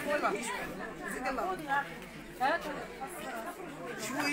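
Several people's voices talking at once at a lower level, overlapping chatter from a gathered group.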